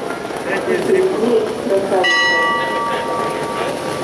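A bell struck once at the racetrack about halfway through, ringing with several clear overtones and fading away over about two seconds.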